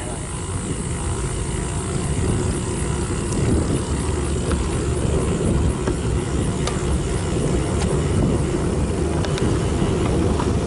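Steady wind noise on a bicycle-mounted action camera's microphone, mixed with tyre and road noise from a road bike riding slowly uphill, with a few faint ticks.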